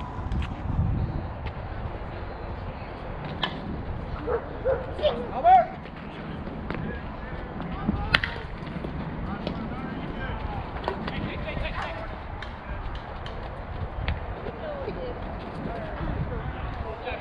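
Players' voices calling and shouting across an outdoor softball field, loudest about five seconds in. A sharp crack about eight seconds in is a bat striking the softball.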